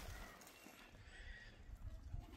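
Near silence: faint outdoor background with a low rumble and a couple of faint high-pitched traces.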